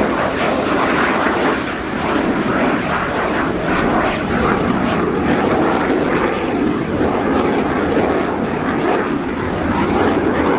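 The twin General Electric F404 turbofans of a McDonnell Douglas F/A-18C Hornet give a loud, steady jet roar as the fighter climbs steeply overhead.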